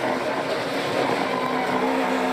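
Onboard sound of a NASCAR Pinty's Series stock car's V8 engine running hard at a fairly steady pitch, heard from inside the cockpit.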